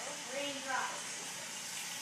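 Faint, brief voices in the first second over a steady hiss of background noise, then only the hiss.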